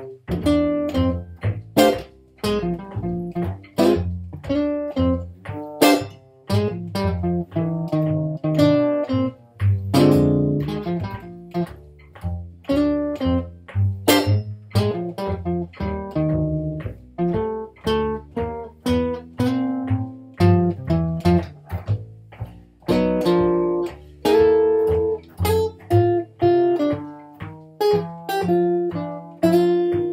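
Jazz blues in F played by an archtop jazz guitar and an upright double bass, the bass plucked pizzicato under the guitar's picked notes and chords.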